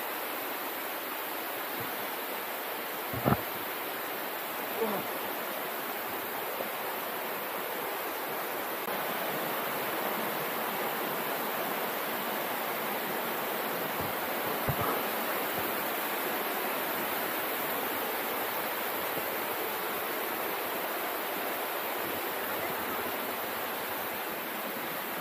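Steady rush of flowing stream water, with a couple of brief knocks, one about three seconds in and another around fifteen seconds.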